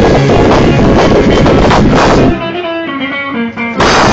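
Live rock band with electric guitar and drum kit playing loudly. About two seconds in the full band drops away, leaving guitar notes ringing, and a sudden loud band hit comes near the end.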